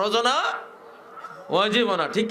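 A man's voice drawn out in long, pitched syllables: one rising at the start, then a pause of about a second, then another long, arching syllable near the end.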